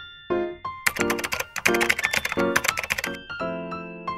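Piano background music, with about two seconds of dense crackling and clicking near the middle from a small sealed plastic packet of clear rings being handled.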